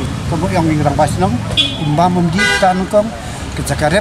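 A man talking against street traffic, with a brief vehicle horn toot about halfway through.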